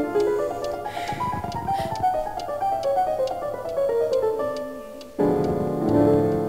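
Piano music score: a run of notes stepping downward and fading away, with a brief soft noise about a second in, then a louder chord and new phrase entering suddenly about five seconds in.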